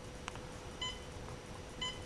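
Humminbird HELIX fish finder giving two short electronic key-press beeps about a second apart as its arrow key is pressed to step through a readout setting, after a faint click.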